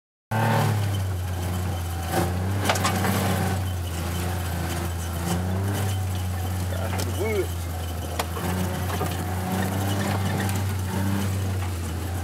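Gator utility vehicle driving over rough forest ground: a steady low engine drone, with the body and roll cage knocking and rattling over bumps, a few sharp knocks in the first few seconds and another about seven seconds in.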